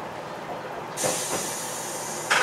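Railcar rolling slowly into a station, heard from the driver's cab, with a sudden sharp air hiss from the brakes starting about a second in and holding steady over the running noise.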